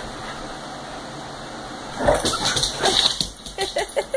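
Dogs play-wrestling: a run of short whines and yips mixed with scuffling, beginning about halfway through after a quiet start.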